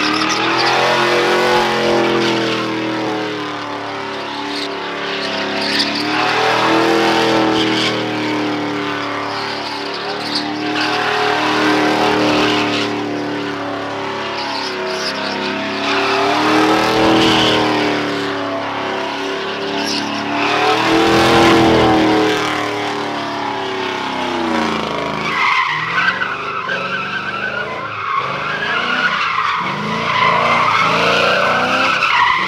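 Pickup truck engine revving up and down in repeated waves while it does donuts, its rear tyres spinning and skidding on the pavement. Near the end a higher-pitched tyre squeal takes over.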